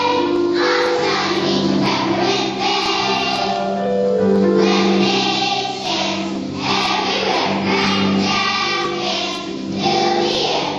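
A choir of young children singing a song together.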